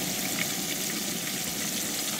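Breaded catfish fillets frying in hot oil in a cast-iron skillet: a steady, even sizzle.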